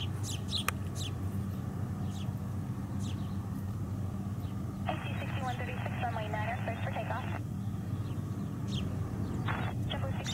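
Airbus A320-family jet taking off in the distance: a steady low rumble. A short, band-limited air traffic control radio call cuts in halfway through, and there are a few brief bird chirps.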